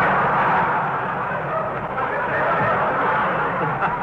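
A large studio audience laughing: one long burst of laughter that tails off near the end. It is heard through the narrow, muffled band of a 1940s radio broadcast recording.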